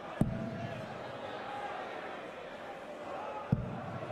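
Two steel-tip darts thud into a bristle dartboard about three seconds apart, over the low murmur of a large crowd.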